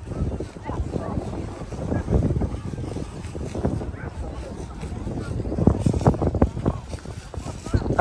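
Wind rumbling on the microphone, with indistinct voices talking in snatches.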